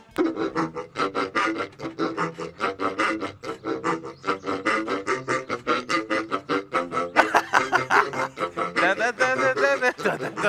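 Rubber squeeze-toy pigs pressed one after another over a row of tubes, sounding as a pig 'organ' that plays a fast tune of short squeaky notes.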